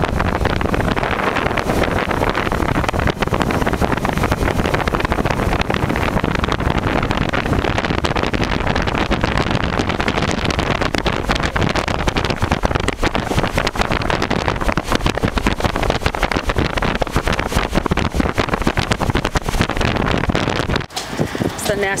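Wind buffeting the microphone over the engine and road noise of a 1934 Packard driving at speed. The noise cuts off abruptly about a second before the end.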